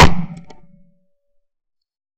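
A single shot from a Davide Pedersoli La Bohemienne 12-bore side-by-side hammer shotgun, a sharp report that dies away within about a second.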